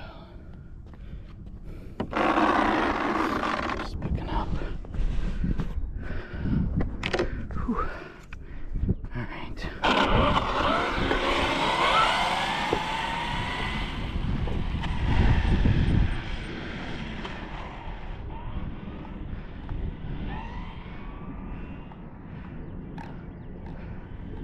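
Stretched Hobao VTE2 RC car's three TP brushless motors on an 8S battery whining under power on a speed run, the pitch sliding up and down. The whine is loudest partway through and then thins and fades as the car runs away down the runway.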